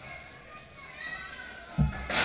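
Low chatter of a small crowd, then one short, heavy thud near the end from a wrestler's body or feet striking the wrestling ring's mat and boards.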